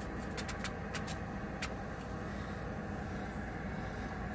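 Steady low background hum, with a few light clicks and ticks in the first second and a half as a plastic water-separator bowl is threaded by hand onto a spin-on diesel fuel filter.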